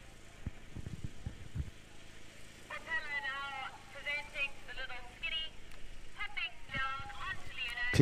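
Faint voices talking in the background, with a few low thumps in the first two seconds.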